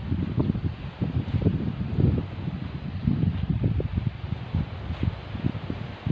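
Wind buffeting the microphone outdoors, an uneven low rumble that rises and falls in gusts.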